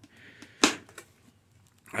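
A sharp plastic click a little over half a second in, with a fainter click shortly after, as the latch on a black plastic battery box is unclipped and the lid opened.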